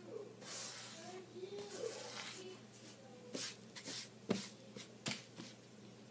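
Soft, breathy hissing bursts close to the microphone with a faint murmuring voice, then a few sharp clicks and knocks, the loudest about four and a half seconds in.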